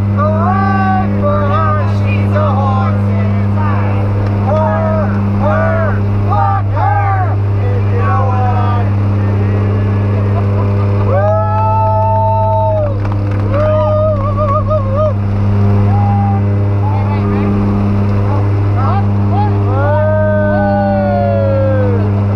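Steady drone of the jump plane's engines heard inside the cabin, with voices calling and singing out over it, including a couple of long drawn-out shouts.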